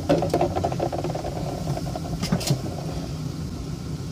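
Plastic Ikea dish-soap bottle being screwed up into its dispenser head, the plastic threads rasping for about three seconds, with a couple of sharp clicks near the end of the turning. A steady low hum runs underneath.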